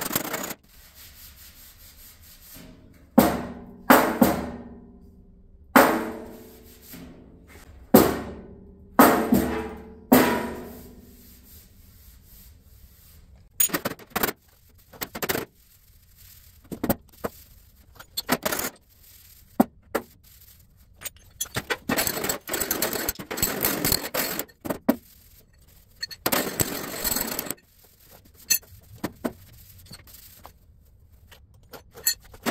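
Hammer blows on the sheet-steel skirt of a 1936 Chevy truck fender during dent repair. About six hard strikes in the first ten seconds each ring and die away. Later come lighter, duller taps and stretches of rubbing on the metal.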